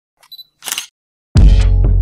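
Opening of a rap track: a few faint clicks and a short hiss, then about two-thirds of the way in the beat drops with a loud hit and a deep, sustained bass note.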